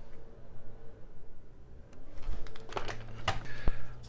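Handling noise on a workbench: a plastic RC monster truck being set down, with several light clicks and knocks in the second half.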